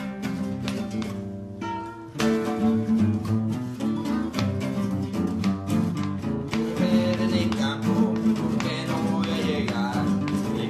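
Acoustic guitar strumming the opening of a punk-corrido song: a chord, a short break about two seconds in, then steady rhythmic strumming.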